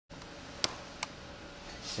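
Ceiling vent fan unit running with a steady, low hum and a faint steady tone. Two sharp clicks come about two-thirds of a second and one second in.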